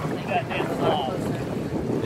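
Wind buffeting the camera's microphone outdoors over open water, a steady rushing noise, with faint voices and a laugh beneath it.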